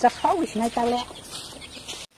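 A woman speaks a few words over domestic chickens clucking.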